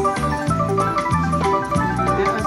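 WMS Gold Fish slot machine playing its bonus-win music while the awarded credits count up on the meter: a looping melody of short bright notes over a repeating bass figure.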